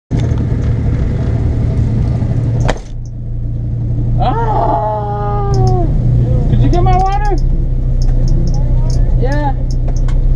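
Honda CRX engine idling steadily, heard from inside the cabin, with a person's voice rising and falling in short exclamations over it a few times.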